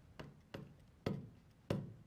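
Stylus tapping on a glass touchscreen display while writing, four sharp knocks each with a short hollow ring of the panel.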